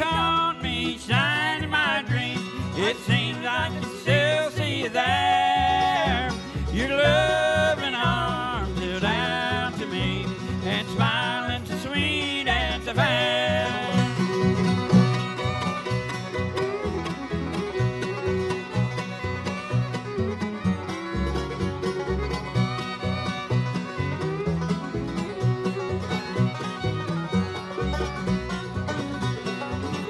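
Bluegrass band playing an instrumental break on fiddle, mandolin, banjo, acoustic guitars and upright bass. A bright, sliding lead line stands out for about the first half, then gives way to a softer passage.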